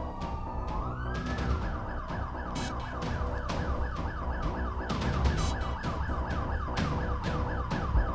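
Police siren: a slow wail that switches about a second in to a fast yelp, rising and falling about four times a second, over a low rumble.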